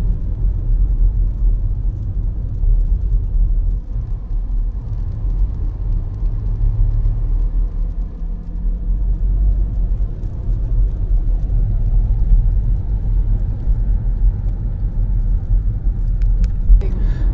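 Steady low rumble of a car driving, heard from inside the cabin: engine and tyre noise on a wet road.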